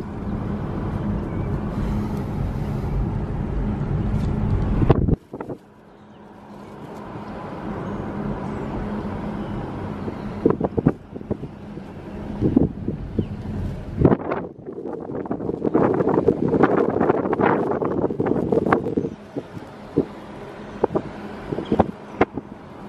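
Road and wind noise inside a moving car, with wind on the microphone. The rumble drops off abruptly about five seconds in and builds again, with scattered knocks and rustles later on.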